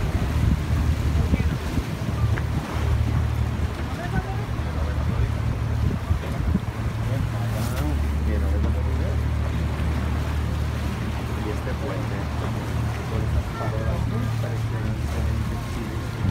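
A river cruise boat's engine running with a steady low drone, under wind buffeting the microphone on the open deck.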